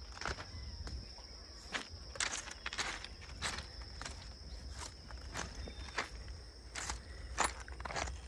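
Footsteps on railway track ballast stones at a walking pace, a crunch roughly every half second. A steady high-pitched insect drone sounds behind them.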